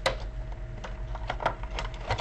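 Trading-card box and packaging being handled and opened: a handful of sharp, irregular clicks and crinkles over a steady low hum.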